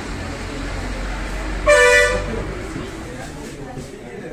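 A vehicle horn gives one short toot about two seconds in, over a steady low rumble of street traffic.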